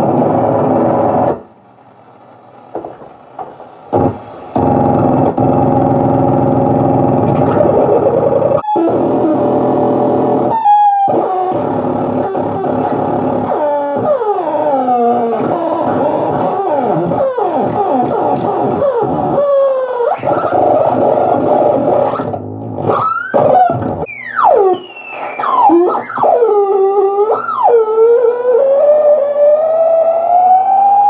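Electric guitar through the urANO FUZZ pedal, a Russian Big Muff–style fuzz with an added oscillator circuit: thick, dense fuzz tones that cut out briefly about two seconds in, then squealing oscillator pitches that swoop up and down while its knobs are turned, ending in a slowly rising tone.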